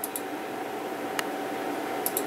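Steady hiss of a running desktop computer's fans with a faint steady tone through it, and a few faint clicks near the start and about a second in.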